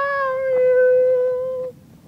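A solo singing voice holding one long, high note, loud and steady, wavering slightly just before it stops near the end.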